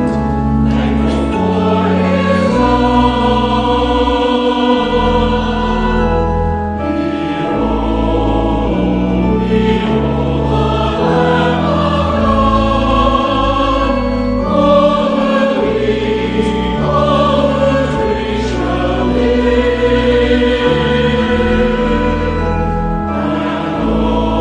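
Choir and congregation singing the closing hymn, over sustained low chords that change every second or two.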